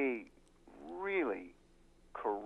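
A man's voice making two drawn-out, wordless syllables, the pitch of each rising and then falling.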